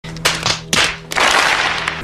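Crowd applause from a film soundtrack: a few separate claps or knocks, then a dense wash of clapping over a low steady hum.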